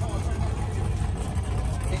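Powerboat engines idling at the dock: a steady low rumble.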